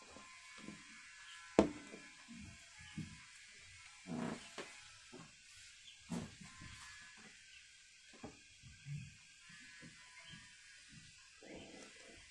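Faint handling noise: scattered soft knocks and rubs, with one sharp click about a second and a half in.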